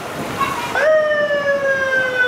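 Police escort siren giving a short blast: its pitch sweeps sharply up about three-quarters of a second in, then holds with a slight downward drift.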